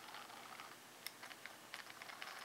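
Faint small clicks and ticks from a scale RC truck transfer case and transmission being turned by hand with a hex wrench, its freshly greased gears turning, with a few quick ticks in the second half.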